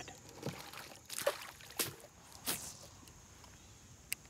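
Water dripping and splashing lightly beside a small boat: four short, soft sounds about two-thirds of a second apart, then quiet.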